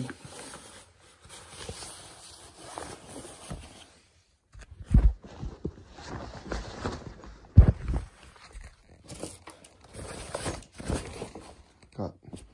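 Fabric rustling and handling noise as shoes are packed into a bag, uneven throughout, with two dull thumps, the louder one a little past the middle.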